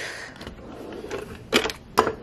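Pot of pasta water at a rolling boil and bubbling over, a low steady hiss, with a few sharp clacks about one and a half seconds in and again near the end.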